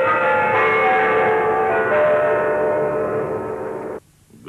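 Kremlin Spasskaya Tower clock chimes ringing: several bell notes ring on together and fade slowly, with new notes struck about half a second and two seconds in. The sound cuts off suddenly at the end.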